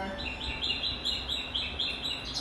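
Rapid electronic two-note chirping from a mobile phone: short tones alternating between a higher and a lower note, about four a second, starting just after the beginning.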